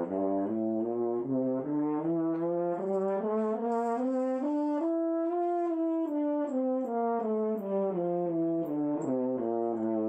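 French horn playing a continuous run of short notes that climbs step by step to a peak about halfway through, then steps back down.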